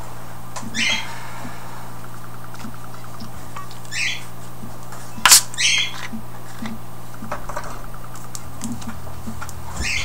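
Screw cap of a two-litre plastic cola bottle being twisted open. Short hisses of carbonation escape about a second in, around four seconds in and again just before six seconds, with a sharp snap about five seconds in, the loudest sound.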